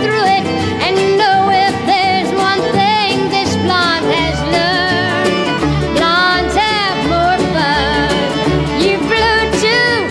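Live country music from a band with fiddle and guitar; a low bass line comes in about four seconds in.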